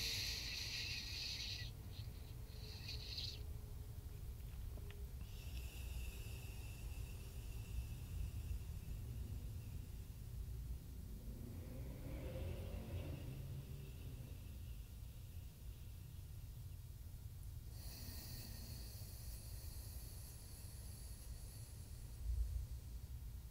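Slow, faint breathing through one nostril at a time during alternate nostril breathing (nadi shodhana): long airy breaths of several seconds each, with quiet pauses between, over a low steady hum.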